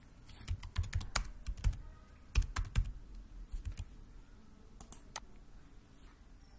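Computer keyboard typing: a quick run of keystrokes in the first two seconds, a second short run around two and a half seconds, then a few scattered key or mouse clicks.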